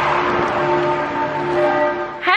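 Church bells ringing, several bells sounding together, over a steady rushing noise.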